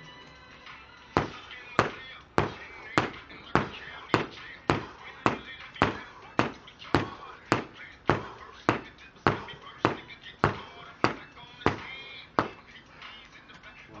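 A rope-handled medicine ball slammed over and over onto concrete paving slabs: a sharp smack about every 0.6 seconds, around twenty in all, stopping a second or so before the end.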